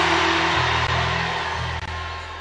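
A congregation cheering and shouting, over sustained low keyboard chords, slowly dying down.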